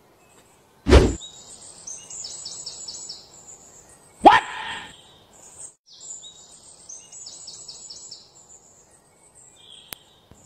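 Faint birds chirping in series of quick high notes, a background ambience, with a sharp loud hit about a second in and another short loud sound just after four seconds.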